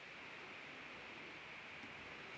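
Faint steady hiss of room tone, with no distinct sounds.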